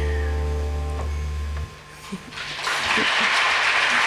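A big band's final held chord, with a low bass note under it, rings on and is cut off about a second and a half in. After a short pause, audience applause swells up.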